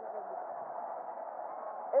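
Steady, even background noise of a narrow-band, radio-quality broadcast recording, with a faint thin tone near the end.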